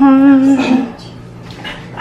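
A person's drawn-out "hmm", held at one steady pitch for nearly a second and then stopping, leaving a faint low hum.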